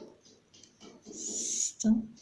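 Small soft clicks and rustles of a metal crochet hook catching and pulling cotton yarn through stitches while double crochets are worked. Near the end, a short hiss and then a brief voiced sound, the loudest moment.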